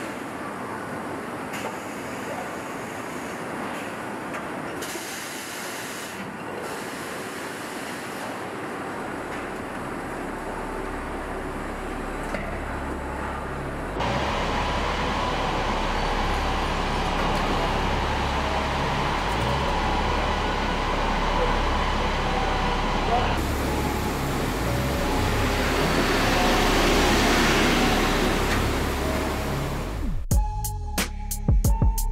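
Truck assembly plant machinery: a steady mechanical din. About halfway through, the sound turns suddenly louder, with a steady low rumble from a pickup running on a roller test stand. The rumble swells for a few seconds near the end.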